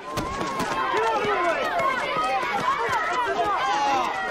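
A crowd of kids yelling and shouting over one another all at once, the noise of a schoolyard fight crowd jeering as a boy is beaten.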